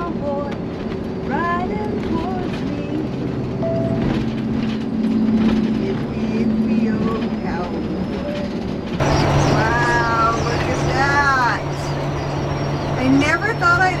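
Converted school bus on the highway: a steady engine and road drone, which grows louder about two-thirds of the way in, with a person's voice heard now and then over it.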